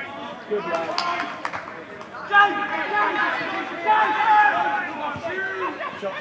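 Indistinct shouting and calling from voices around a football pitch during play, loudest in the middle of the stretch, with a couple of sharp knocks about a second in.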